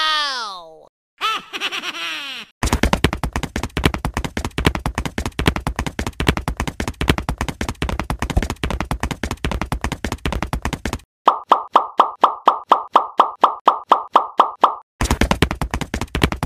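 Cartoon sound effects for stop-motion animation. A short squeaky glide that rises and falls comes first. Then a long run of rapid clicking ticks, then a quick series of plops at about five a second, and more rapid ticks near the end.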